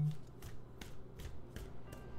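A deck of tarot cards being shuffled by hand: a string of faint, irregular card snaps and flicks, after a brief hummed 'mm-hmm' at the very start.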